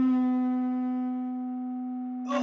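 Electric guitar with a single sustained note ringing on and slowly fading.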